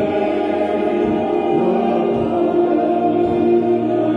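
Background choral music, voices holding long sustained chords.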